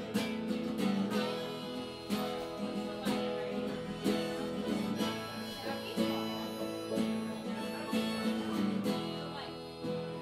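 Acoustic guitar strummed in a steady rhythm.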